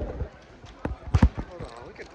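A few dull thumps about a second in, over faint background noise.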